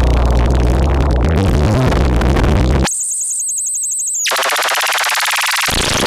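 Harsh electronic noise from a Eurorack modular synthesizer patch of Mutable Instruments Stages and Tides with a Nonlinear Circuits Neuron. Dense distorted noise with heavy bass cuts off suddenly about three seconds in to a thin, wavering high whistle. About a second later a bright buzzing noise returns, and the bass comes back near the end.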